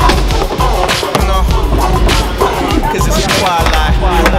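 Hip-hop music with a heavy bass beat and a sung vocal line, mixed with skateboard sounds: wheels rolling on the ramps and several sharp board clacks and landings.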